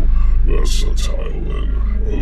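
A deep male voice narrating, over a steady low drone.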